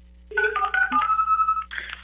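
A short electronic jingle of a few steady, stepped tones, like a phone ringtone, lasting about a second and a half and cueing a listener's voicemail. Near the end a caller's voice starts, thin and cut off like a phone line.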